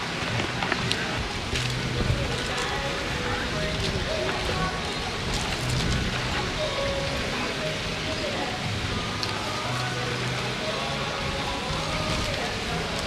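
Steady noisy outdoor ambience, a hiss like wind or surf, with faint background music and distant voices underneath.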